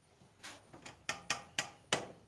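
A series of sharp knocks, about six over a second and a half at uneven spacing, each dying away quickly.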